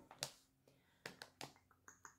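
Faint handling of paperback books: a light click just after the start, then a quick cluster of four or five soft clicks and taps about a second in, as the books are picked up and held together.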